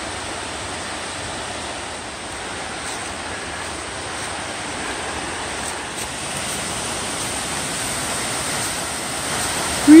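Waterfall cascading down a rocky slope, a steady rush of water running high after days of rain, growing a little louder toward the end.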